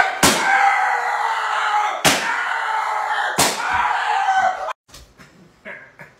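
Three loud smacks, about 0.3, 2 and 3.4 seconds in, each followed by a long drawn-out yell, ending abruptly at about three-quarters of the way through; only a few faint short sounds follow.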